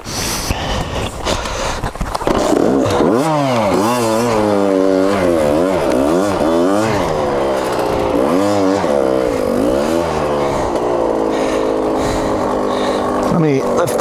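KTM two-stroke dirt bike engine being revved up and down over and over, the pitch rising and falling about once a second as the bike is worked over rocky ground; the revs hold steadier near the end.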